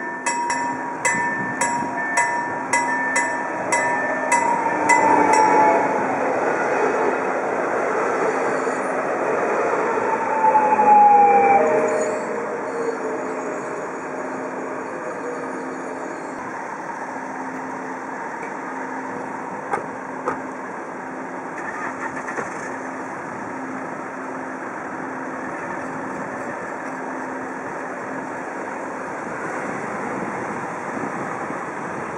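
Electronic level-crossing bell (KLD acoustic signal) dinging rapidly, about two to three strokes a second, which stops about five seconds in. Then road traffic crossing the tracks: cars driving past, loudest about eleven seconds in, with a falling whine as one goes by.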